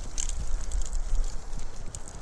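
Gloved hands working apart a potted fruit tree's root ball: soil and fibrous roots rustling and crackling in irregular small ticks over a steady low rumble.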